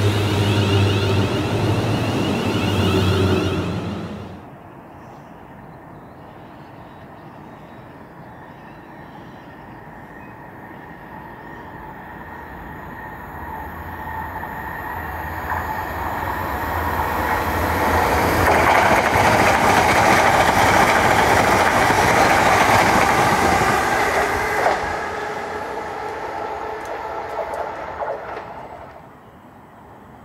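ScotRail electric multiple unit running past at close range with a wavering motor whine, cut off abruptly about four seconds in. A second electric train then approaches, building steadily to a loud pass and fading away near the end.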